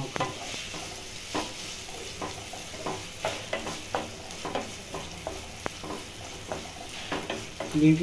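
Chopped onions and green chillies sizzling in oil in a nonstick pan, with a wooden spatula stirring and scraping them in short irregular strokes.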